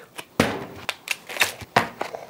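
Plastic wrap being handled and pulled off a foam meat tray: a string of sharp snaps and crackles, about five of them.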